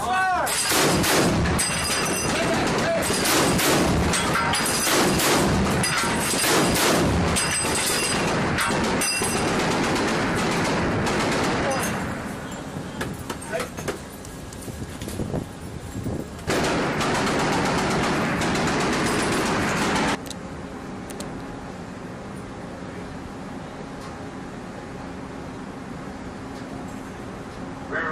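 A Mk 38 mount's 25 mm M242 Bushmaster chain gun firing a run of heavy shots, roughly two a second, for about the first twelve seconds. After that the firing stops and only noise is left, with a louder stretch of rushing noise lasting about four seconds, then a lower steady hiss.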